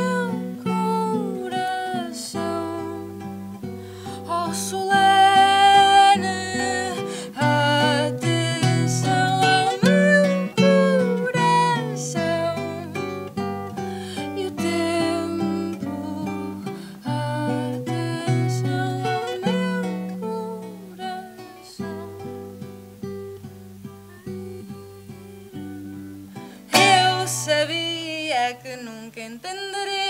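A Venezuelan cuatro and a requinto guitar playing together: quick plucked and strummed chords over a stepping bass line. A woman's voice sings in places, most strongly near the end.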